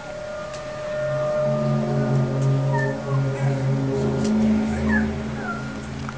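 A loud, low drone of several steady tones that swells about a second in and shifts in pitch, the unexplained 'strange sound' heard over the apartment blocks of Kyiv. Faint bird chirps sound over it.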